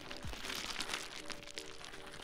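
Background music with a low drum hit just after the start, under a transition sound effect: a dense rattle of many small clicks and hiss.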